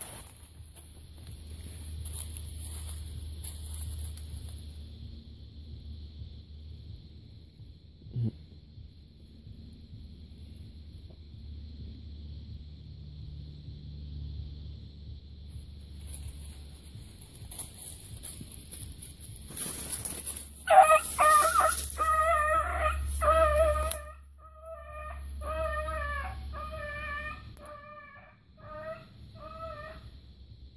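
A run of short, pitched animal calls starting about two-thirds of the way through: a quick burst of calls, a brief pause, then a sparser string of calls near the end.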